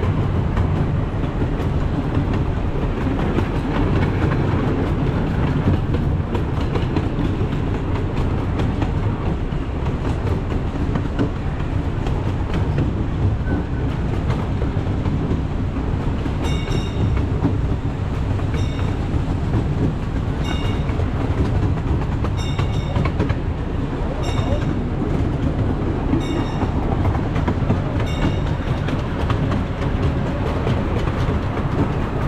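Miniature steam train rolling steadily along its track, a continuous rumble with clickety-clack of the wheels on the rail joints. From about halfway through, a bell dings about every two seconds, a crossing warning bell.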